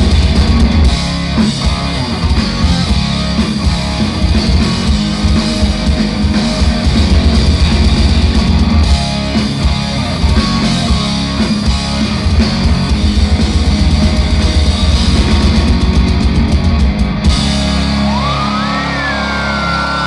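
Rock band playing live: electric guitars, bass guitar and drum kit in a loud instrumental passage. About seventeen seconds in the drums stop and a held chord rings on, with a high tone sliding up and down over it near the end.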